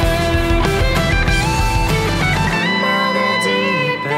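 An electric guitar plays a lead solo over the band's bass and piano. About two and a half seconds in, the bass drops out and a held note with vibrato rings on.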